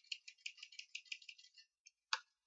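Computer keyboard typing: a quick, faint run of keystroke clicks, about eight a second, stopping after about a second and a half.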